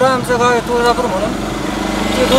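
A man's voice speaking over street noise, with a motor vehicle engine running low underneath.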